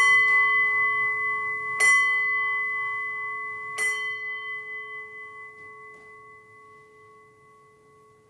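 A small altar bell struck three times, about two seconds apart, each strike ringing out with the same clear pitch and fading slowly after the last. It marks the elevation of the cup just after the words of institution.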